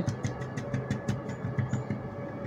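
A steady, low, engine-like hum runs throughout, with faint taps of a felt-tip marker dabbing dots onto paper.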